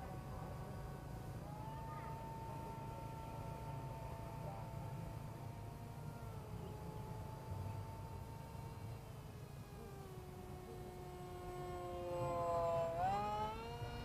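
Distant whine of an RC parkjet's Turnigy 2200KV brushless electric motor and propeller in flight. The pitch drifts slowly down for most of the time, then rises sharply near the end as the throttle is opened.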